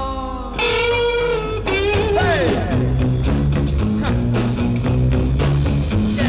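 A late-1960s beat-rock band recording with an instrumental passage: held electric guitar notes bending in pitch, then bass and drums come in with a steady beat a little before halfway.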